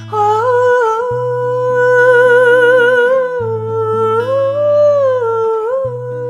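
A woman singing a long wordless melody with vibrato over chords on an Epiphone acoustic guitar. Her voice climbs about four seconds in and falls back near the end, while the guitar's bass note changes about every two seconds.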